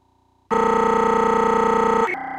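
Digital audio glitch from a breaking-up internet video call: about half a second of dropout, then a loud, steady, unchanging buzzy tone as a stuck fragment of audio repeats.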